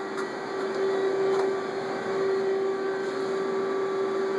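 Steady hum of a powered-up CNC milling machine: one constant note over an even hiss, with a few faint clicks.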